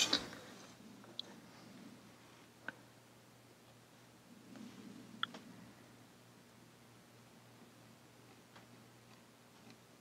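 Quiet room with a few faint, sharp ticks spread a second or more apart: the metal nib of a dip pen touching and scratching the painted board. A brief rustle at the very start as the board is shifted on the table.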